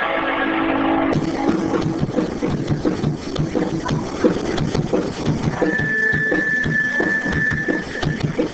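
Live garage rock: strummed electric guitar chords, cut off abruptly about a second in. Then loose, irregular drum hits and clatter from the kit, with a steady high tone for about two seconds near the end.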